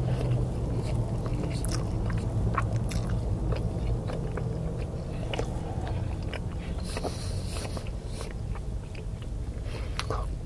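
Close-up chewing and biting of a chaffle breakfast sandwich, with many small wet mouth clicks throughout. A low steady hum sits underneath and fades about halfway through, and a brief hiss comes about seven seconds in.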